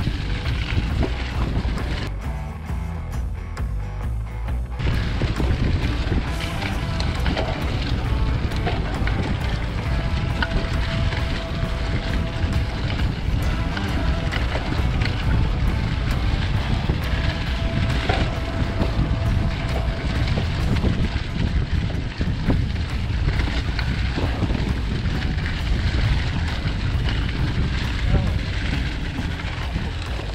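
Mountain bike ridden along a rough, leaf-covered dirt trail: continuous rumbling wind buffeting on the camera's microphone mixed with the rattle and clatter of the bike over roots and bumps. A thin steady squeal comes in twice for a few seconds.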